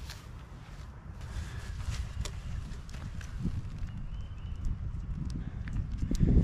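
Wind rumbling on the microphone, with a few scattered light clicks or footsteps. Faint short chirps, repeated a few times, come in near the end.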